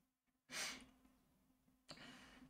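A person's short sigh, a breath out into the microphone about half a second in, with a second, softer breath starting near the end; otherwise near silence.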